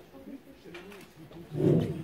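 Quiet murmured talk, then a short, loud vocal burst close to a table microphone near the end.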